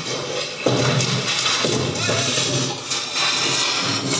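A film soundtrack played back over studio speakers: music with sound effects layered in, including a sound amplified and given added reverb.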